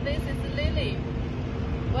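A steady low rumble with a constant mechanical hum, under a few brief words from a woman's voice in the first second.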